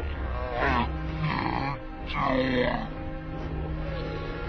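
Dramatic film score music with a cartoon character's short strained grunts and cries, three of them bending up and down in pitch, as the character strains against a dog pulling on his leg.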